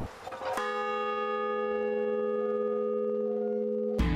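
A large bronze bell rung once about half a second in, then ringing on in a steady, even hum of several overtones, cut off suddenly near the end.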